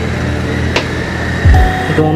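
Background music with a deep bass-drum hit about one and a half seconds in and a sharp click before it, over a steady low rumble of traffic.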